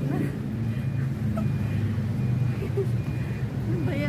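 Street traffic: a motor vehicle engine running nearby, a steady low hum.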